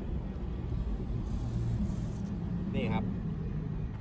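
Low, steady rumble of a motor vehicle, with a single short spoken word near the end.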